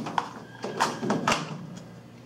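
A few short clicks and rustles of small plastic parts being handled: a back-probe pin taken from its clear plastic case.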